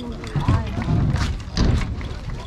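People talking in the background, short unclear phrases, with a couple of brief knocks about a second in and near the end.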